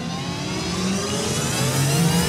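Rising whoosh sound effect: a swelling rush of noise with several tones gliding steadily upward, growing louder throughout.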